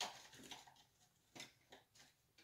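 Faint scattered clicks and taps of paintbrushes being handled while one is picked out, a sharper click first.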